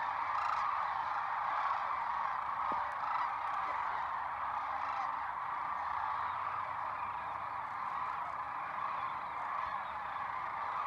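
A large flock of sandhill cranes calling as they fly in: a dense, unbroken chorus of many overlapping calls, easing slightly after the middle.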